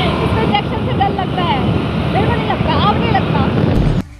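Wind rushing over the microphone and road and engine noise from a moving motor scooter, heard from the pillion seat, with faint snatches of voices.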